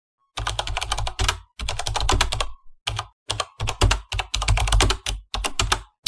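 Computer keyboard typing, rapid keystrokes in about seven quick bursts separated by brief pauses.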